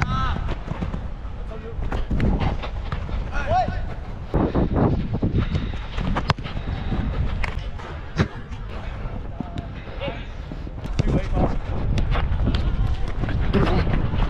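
Players shouting to each other during a football match, heard from a camera strapped to a running player's head, over footfalls and a low wind rumble on the microphone. Two sharp knocks stand out, about six and eight seconds in.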